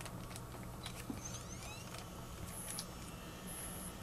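Faint clicks and handling noise from a handheld camcorder being switched on and readied, with a brief faint rising whine about a second in, over a steady low hum.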